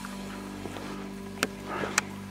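Steady low hum of an electric trolling motor holding the boat against the current. Two sharp clicks come about a second and a half in and right at the end.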